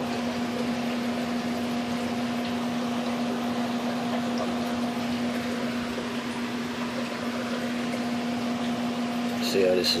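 Steady hum of a small motor running, with a constant low tone and a fainter higher tone over an even hiss.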